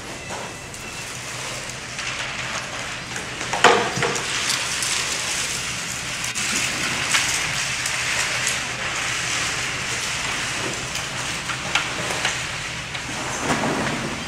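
A steady rushing hiss with scattered clicks and knocks, a louder knock coming about four seconds in and another near the end.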